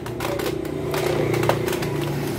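An engine running with a low, steady hum that grows slightly louder, with one sharp click about one and a half seconds in.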